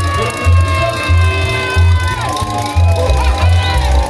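Live carnival band music with a steady bass beat, about three beats every two seconds, under long held notes. Crowd shouts and whoops rise over it about halfway through.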